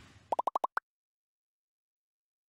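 Animated-logo sound effect: a quick run of six short, rising bloop pops within about half a second, the last one higher-pitched, following the fading tail of a whoosh.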